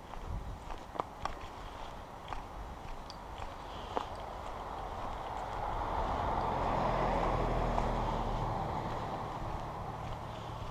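Footsteps crunching on a dirt forest trail. Then a vehicle passes on the adjacent road: its tyre and engine noise swells to the loudest point about seven seconds in and then fades.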